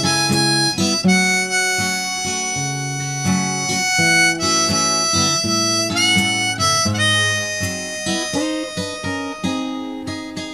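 Hohner blues harp played in a neck rack, a solo of long held notes that bend and change pitch every second or so, over a Johnson JSD-66 acoustic guitar picked and strummed in a slow, steady rhythm.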